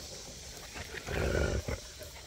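A dog's short low growl, lasting about half a second, a second in, as hound puppies tussle.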